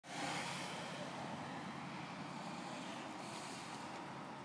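Street traffic ambience: a steady hiss of cars on a road, fading in at the very start.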